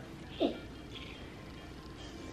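A single brief vocal sound about half a second in, falling quickly in pitch, over quiet room tone.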